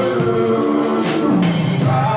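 Live church band music: a drum kit keeps a steady beat under held melodic tones.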